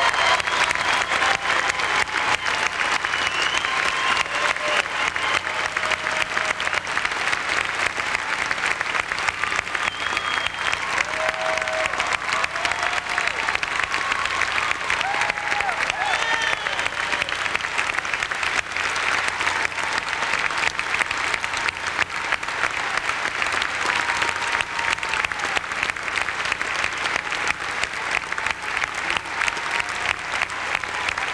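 Concert audience applauding steadily at the end of a live performance, with scattered cheers rising above the clapping.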